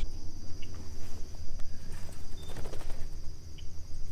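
Steady high chirring of marsh insects, over a low rumble.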